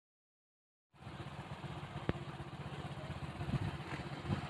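Dead silence for about the first second, then a running road vehicle cuts in abruptly: engine and road noise with a low rumble and one sharp click about two seconds in.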